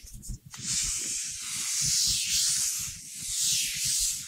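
Whiteboard eraser wiping across the board in a few long sweeping strokes, a dry hiss that swells and fades with each stroke.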